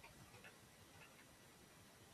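A few faint, isolated keystrokes on a computer keyboard, typed while entering a terminal command.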